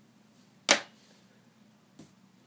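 A single sharp click about two-thirds of a second in, from the felt-tip marker being handled after writing.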